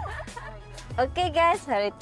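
Background music fading out, then a woman's animated, sing-song voice starting about halfway through with sharp jumps in pitch.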